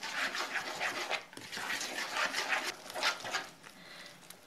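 Wet grated-potato pancake batter being stirred in a plastic bowl: irregular, noisy mixing strokes through the thick, moist mix.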